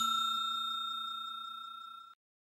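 A bell-like chime sound effect, the ding of a notification bell, ringing on and fading away steadily.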